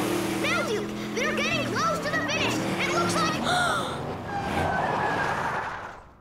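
Several excited cartoon voices whooping and yelling in rising and falling calls, over a background music score and vehicle noise. Everything drops away to quiet just before the end.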